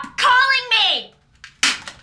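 A woman's wordless distressed cry whose pitch falls away within the first second, followed by a short, sharp breath at about a second and a half.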